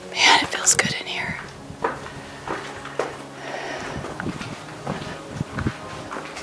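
A short whispered voice in the first second, then scattered footsteps scuffing and tapping over a rocky, sandy cave floor.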